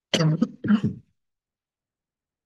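A man clearing his throat: two short, rough sounds in the first second.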